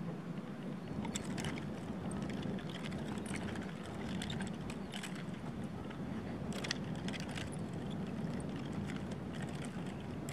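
Nunchaku sticks and their connecting chain clicking and rattling in irregular short clacks as they are spun, released and caught in the hands, over a steady low rumble.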